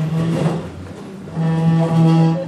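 Chair legs dragging across a wooden floor, a loud droning scrape heard twice: briefly at the start, then for about a second from halfway in.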